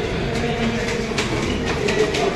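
Footsteps of several people climbing a stairwell, an irregular clatter of steps over a steady background of noise.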